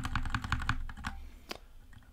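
Computer keyboard: a quick run of keystrokes, about ten a second, stopping under a second in, then a single key press about a second and a half in. The keys move the cursor up through a configuration file open in a terminal text editor.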